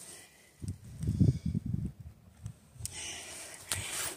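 Soft, irregular low scuffs and rustles of someone shifting on rock and handling the camera, lasting about two seconds, followed by a couple of faint clicks near the end.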